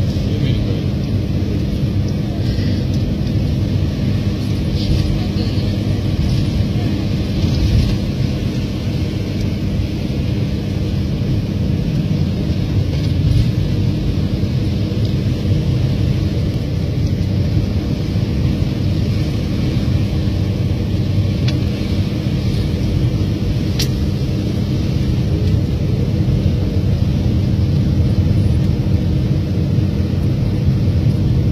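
Motor vehicle driving along a road, heard from inside the cabin: a steady drone of engine and road noise.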